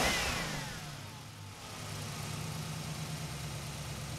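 Chevrolet Avalanche pickup's V8 engine cutting in suddenly, loudest in the first second with a falling whine, then running at a steady low idle.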